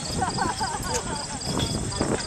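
Hooves of a team of two horses walking as they pull a passenger wagon, with people's voices over them.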